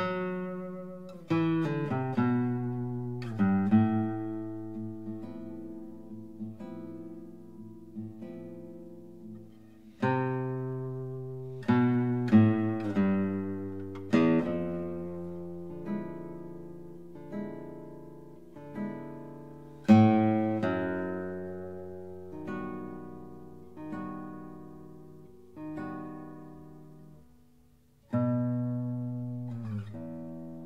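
Background music of slow plucked acoustic guitar: notes and chords are picked one after another and left to ring and fade.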